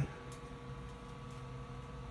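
Faint steady electrical hum with a low hiss: a few thin constant tones under an even noise floor.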